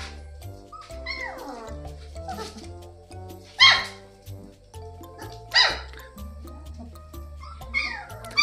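Three-week-old German shepherd puppies yipping: a few short, sharp cries, the loudest about three and a half and five and a half seconds in, over background music with a steady stepping bass.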